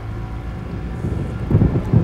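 Steady low rumble of wind and a ship's engine at sea. About a second and a half in, a louder deep rumble of thunder comes in as a storm gathers.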